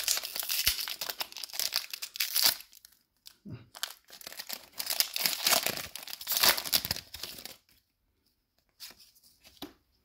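A Magic: The Gathering booster pack's shiny foil wrapper being torn open and crinkled by hand, in two spells of crackling of about three seconds each. It stops about three-quarters of the way through, leaving only a few faint clicks.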